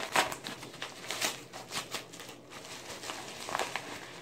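Paper mailer envelope being handled and opened: irregular crinkling and rustling of stiff kraft paper, with scattered sharp crackles.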